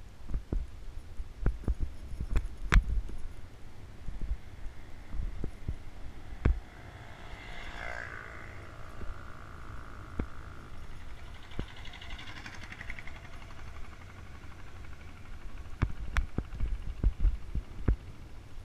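Bike-mounted action camera jolting over a rough road: a low rumble with irregular knocks and clicks, thickest in the first few seconds and again near the end. A fainter higher-pitched sound rises and fades twice in the middle.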